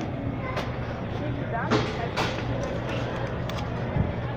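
Store background: a steady low hum, a few short clicks and knocks from the phone being handled, and faint voices in the distance.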